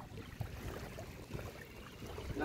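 Faint trickling and sloshing of shallow river water as a cast net is drawn in by its hand line, with a couple of soft ticks.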